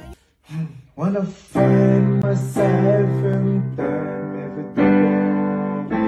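Digital piano playing slow, sustained chords that change about once a second, starting about one and a half seconds in after a short quiet gap.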